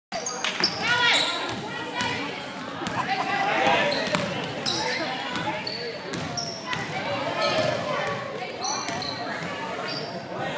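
A basketball being dribbled on a hardwood gym floor during a game, with sharp knocks throughout, short high squeaks, and spectators talking and calling out.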